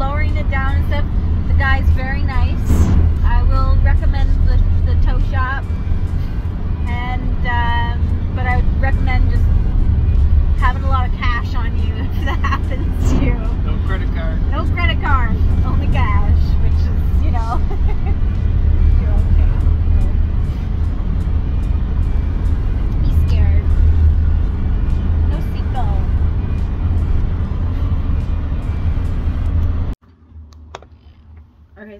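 Steady low rumble of engine and road noise inside the cab of a moving truck on the road, with voices and music over it.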